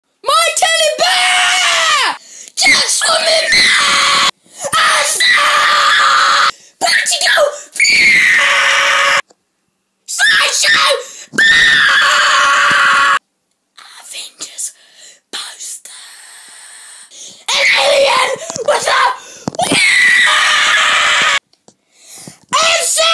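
A child screaming over and over, long loud screams of one to three seconds each with short breaks between them, several cut off abruptly.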